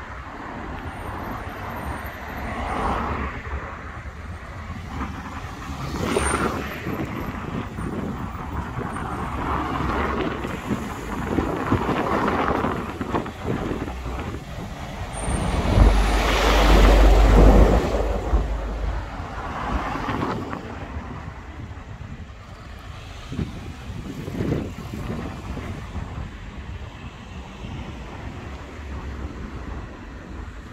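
Road traffic on a town street: a string of cars passing one after another, each swelling and fading. About halfway through, a MAN lorry passes close by: the loudest sound, with a low engine rumble.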